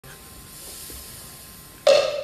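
Steady hiss of the hall, then near the end one sudden loud struck percussion note that rings on briefly: the opening stroke of an Isan folk ensemble starting to play.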